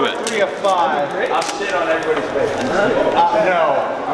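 Background chatter of other people talking in a busy room.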